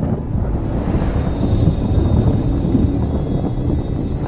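A loud, steady low rumble of wind-like noise from a film soundtrack, with no clear beat or melody.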